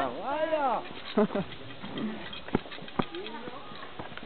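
A person's drawn-out wordless call in the first second, its pitch rising and then falling, followed by a few short vocal sounds and two sharp clicks about half a second apart.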